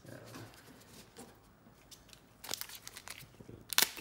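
Plastic wrapper of a 2021 Topps Allen & Ginter trading-card pack crinkling as it is picked up and handled, faint at first and loudest near the end.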